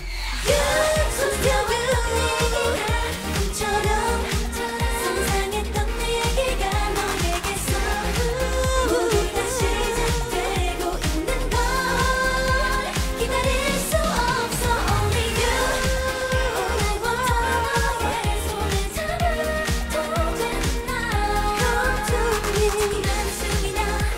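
K-pop song performed by a girl group: several women's voices singing together over an electronic pop backing track with a steady dance beat and bass.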